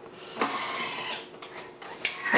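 Thermomix TM6 motor starting up and running steadily, its blade puréeing soft roasted pumpkin pieces under the lid at the low end of a speed 5 to 9 ramp.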